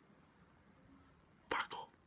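Near silence, then two short breathy whispered sounds from a man close to the microphone, near the end.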